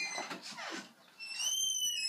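A high-pitched squeal that starts just past halfway in and glides slowly down in pitch.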